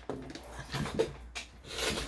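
Tarot cards being shuffled by hand: several short, hissy strokes of cards sliding and rubbing against each other, the loudest near the end.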